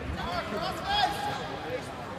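Several voices of spectators and coaches talking and calling out at once, overlapping in a large, echoing hall.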